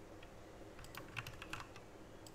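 A few faint, irregular keystrokes on a computer keyboard.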